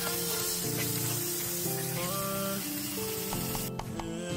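Background music over tap water running into a stainless steel sink as blue crabs are rinsed under the stream; the water hiss cuts off near the end.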